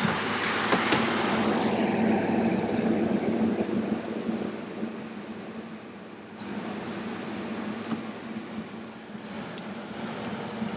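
Steady mechanical hum of a walk-in cool room's refrigeration, with a loud rush of noise fading over the first two seconds as the cool room door is pushed open. A brief high hiss comes about six and a half seconds in.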